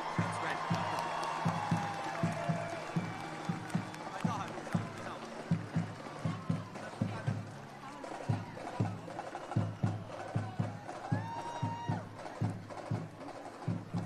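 Marching band playing, its drums carrying a steady low beat of about two to three hits a second, with the melody faint beneath the beat, over crowd noise.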